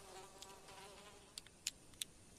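Faint, steady buzzing of flies, with two soft clicks about a second and a half in.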